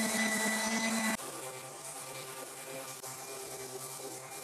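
Ridgid random orbit sander with 100-grit paper running on a dyed wooden block, a steady hum. About a second in the sound drops abruptly, quieter and lower in pitch.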